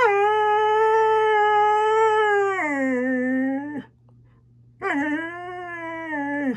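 Siberian husky howling: one long howl that steps down in pitch partway through and fades out after almost four seconds, then a second howl starts about a second later.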